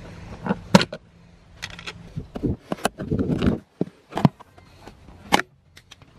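Plastic trim covers over a pickup's seat-track bolts being popped up and handled: a handful of sharp plastic clicks and knocks, with a short rustle about three seconds in.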